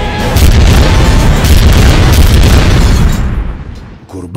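Movie explosion sound effect: a loud boom with a long low rumble that starts just after the beginning and dies away over the last second, with trailer music under it at first.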